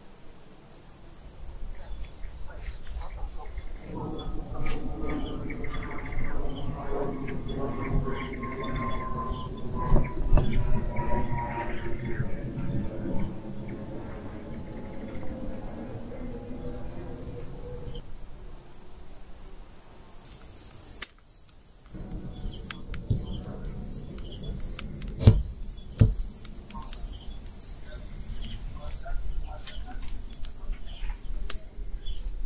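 Crickets chirping in a steady, high-pitched, rapidly pulsing chorus. From about four seconds in to about eighteen seconds a low droning hum sounds under it, its pitch slowly falling. Scattered clicks and a few sharp knocks come through, the loudest about two-thirds of the way in.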